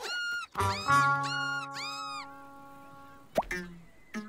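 Cartoon sound effects over a held musical chord: a few short rising-and-falling cries, a knock about half a second in, and a short plop near the end.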